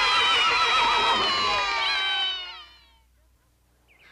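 Cartoon soundtrack: many wavering pitched voices or instruments sounding together, sliding downward about two seconds in and fading out soon after.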